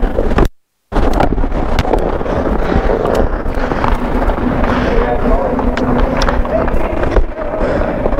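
Ice hockey practice heard through the goalie's body-worn Bluetooth microphone: skates scraping the ice, sharp clacks of sticks and pucks, and players' voices in the background. The sound drops out completely for about half a second shortly after it begins, a glitch of the wireless microphone.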